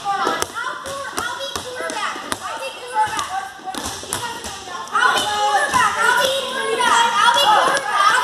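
Children playing ball in a gym hall: balls bouncing and thudding on the court floor among children's shouting and chatter. The voices grow louder and busier about five seconds in.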